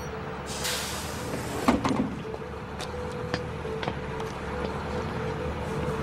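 City bus idling at the stop, with a hiss of compressed air starting about half a second in and lasting about a second, then a sharp knock.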